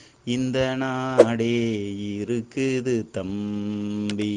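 A man's voice chanting in long held tones, with a few short breaks.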